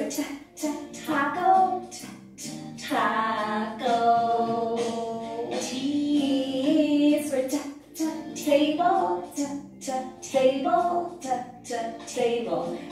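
A children's phonics song for the letter T: a woman singing short held phrases over sharp percussion hits.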